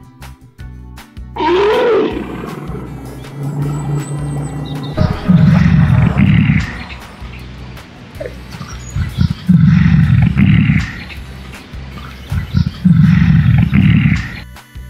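Three loud, deep animal roars, about four seconds apart, the stock roar effect given to an animated beast, over background music. A short cry that rises and falls in pitch comes about a second and a half in.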